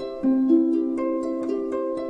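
Gentle instrumental music of picked notes, about four a second, each ringing on over the next in a repeating arpeggio.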